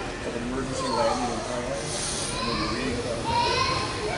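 Voices away from the microphone, from people in the audience of a large hall.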